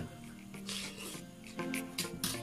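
Background music with steady tones. About three-quarters of a second in comes a short hissy sucking sound from the mouth while eating spicy noodles, and a fainter one near the end.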